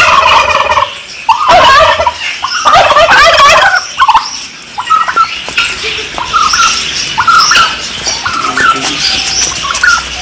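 Domestic turkey toms gobbling: three loud, rapid, rattling gobbles in the first four seconds, then shorter calls.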